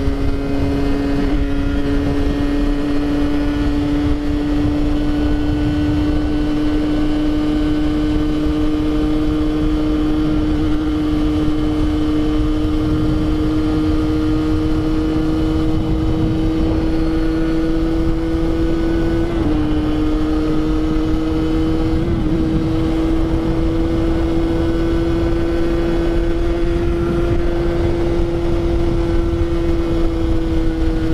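Rieju MRT 50 motorcycle's two-stroke 50cc single (Minarelli AM6) with its derestricted stock exhaust, running at a steady cruise with a high, buzzing engine note that slowly climbs in pitch. The note dips briefly twice about two-thirds of the way through. Wind rush on the microphone underneath.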